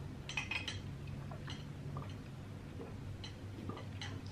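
Close-up eating sounds of chewing king crab meat: a quick cluster of soft, sharp clicks just after the start, then a few scattered single clicks, over a low steady hum.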